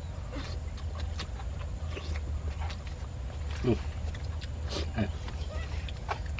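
Young macaque giving two short grunting calls, about two-thirds of the way through and again a second later, over small scattered clicks and a steady low rumble of wind on the microphone.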